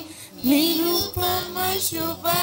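Children singing a slow melody with long held notes that glide between pitches. There is a short break just after the start, and the singing comes back about half a second in.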